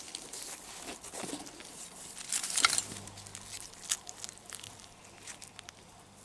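Hand trowel and hand working loose garden soil to plant a bulb: a run of soft scrapes and crackles of soil and leaves, loudest about two and a half seconds in.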